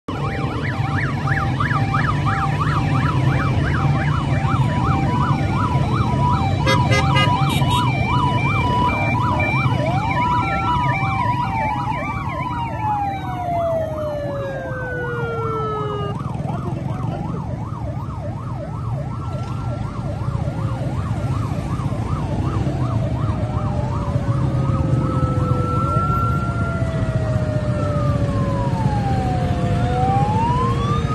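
Several emergency sirens from a passing police convoy sound together. Fast warbling yelps overlap slow wails that rise and fall, with several winding down in pitch partway through, over the low running of motorcycle and vehicle engines.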